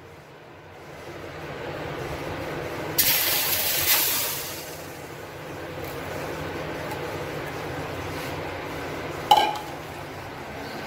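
Freshly washed homemade butter dropped into a preheated steel kadhai, sizzling and frothing as its water hits the hot metal. A loud burst of sizzle about three seconds in settles to a steady sizzle, and a sharp metal clink comes near the end.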